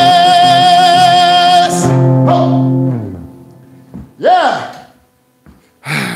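A male singer holds a long high note with vibrato over an acoustic guitar, ending the song about two seconds in. The guitar's last chord rings out and fades by about three seconds. A short vocal whoop follows around four seconds in, then a brief exclamation near the end.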